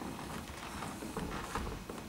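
Faint footsteps and small knocks of people moving on a wooden stage floor, scattered and irregular, over a low room rumble.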